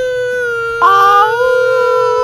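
A man howling one long, high, steady note that shifts slightly in tone about a second in.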